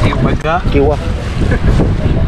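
Wind rumbling steadily on the microphone, with brief bits of people's voices about half a second in.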